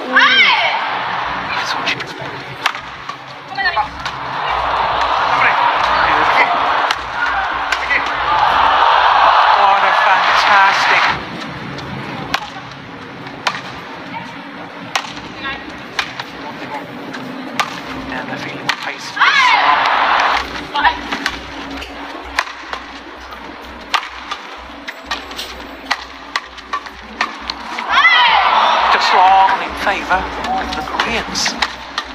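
Badminton played in an indoor arena: sharp racquet strikes on the shuttlecock and shoe squeaks on the court. Loud bursts of crowd cheering and shouting come near the start, through the middle, about nineteen seconds in and near the end.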